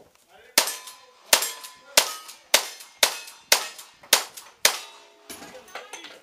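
Lever-action rifle fired eight times in quick succession, about two shots a second, each crack trailing off with a short ring.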